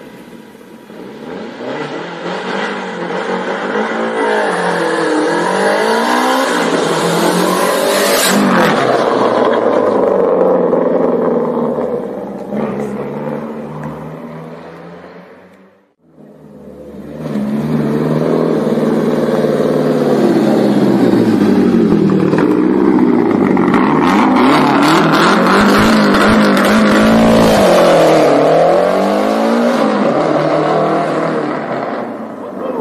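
A rally car's engine revving hard and changing gear, its pitch repeatedly climbing and dropping. The sound fades out about halfway, then a second run fades back in and carries on revving.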